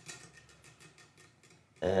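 Prize wheel winding down, its pointer ticking over the pegs more and more slowly until the wheel stops. A voice starts near the end.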